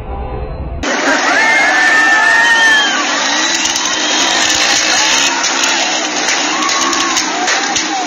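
A crowd of protesters shouting in the street, many voices at once, with motorbike engines running close by. The sound starts abruptly about a second in, after a brief stretch of a different, muffled recording.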